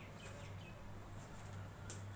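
Faint bubbling of water at the boil in a covered stainless-steel pot of drumstick pieces, with a low steady hum. There is a single light metallic click near the end as the lid is lifted.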